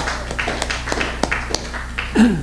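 Scattered hand clapping from a small audience, a sparse patter of individual claps several times a second, over a steady low hum.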